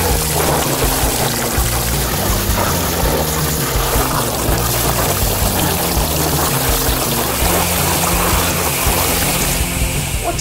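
Water pouring and splashing over a plastic toy garbage truck as it moves through a shallow toy car wash: a steady hissing spray. Background music plays throughout.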